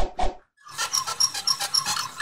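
Sound-effect sting for an animated logo: two or three sharp knocks, then a dense run of short high chirps repeating about four times a second.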